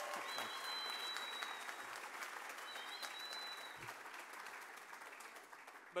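Audience applauding, with a high whistle heard twice; the clapping fades away over the last couple of seconds.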